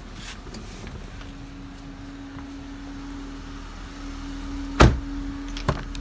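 A car door shutting with a single loud thump about five seconds in, followed by a lighter latch click, over a steady hum.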